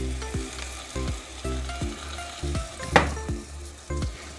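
Raw prawns sizzling as they fry in onion-tomato masala and oil in a clay pot. One sharp knock comes about three seconds in.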